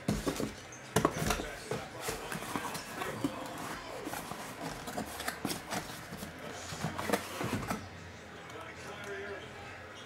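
Handling of a small black cardboard card box: it is lifted from a stack, its lid is opened and a foam insert is pulled out, giving a run of clicks, scrapes and rustles that quiets down near the end.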